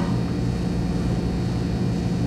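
Steady low electrical hum with a buzzy drone, unchanging throughout.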